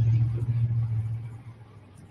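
Diesel engine running: a steady low rumble that fades away over about a second and a half.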